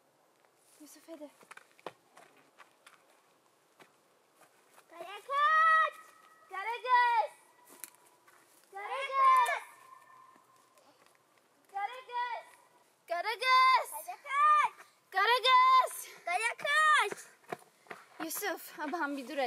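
A young woman and a boy calling out the name "Karakız!" again and again, in long, drawn-out, rise-and-fall calls that come closer together toward the end, with a few faint footstep-like ticks before the first call.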